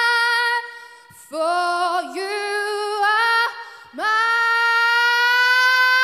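A female pop singer's voice, unaccompanied, singing held notes with vibrato. A short phrase comes about a second in, and after a brief pause she holds one long note from about four seconds on.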